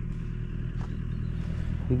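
Diesel engine of an earth-moving machine idling with a steady low hum.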